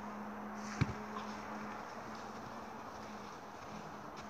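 Steady outdoor background noise with a faint low hum, and a single sharp knock a little under a second in.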